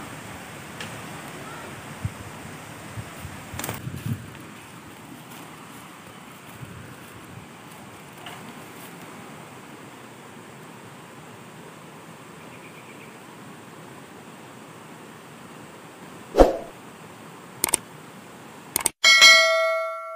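Steady outdoor background hiss with a few faint knocks and one sharp thud near the end, followed by a bright bell-like ding that rings and fades: the chime sound effect of an animated subscribe-button and notification-bell end card.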